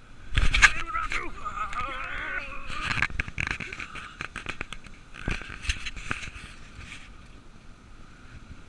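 Dog sled running over packed snow: its runners scrape and the sled knocks and rattles over bumps in the trail. A wavering voice-like call, a person or a dog, sounds about one to three seconds in.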